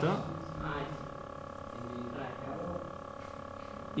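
Faint, indistinct voices in a room, heard in short snatches, over a steady electrical hum.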